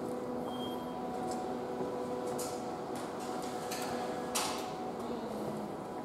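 Train station concourse ambience: a steady hum made of several held tones, with a short high beep about half a second in and a few scattered clacks and knocks in the second half.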